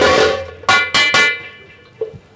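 Stage band instrument playing short, loud musical stabs: one ringing out at the start, then three quick ones about a quarter second apart, each dying away quickly.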